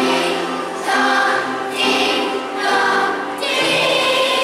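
Children's choir singing together, moving from one held note to the next about once a second.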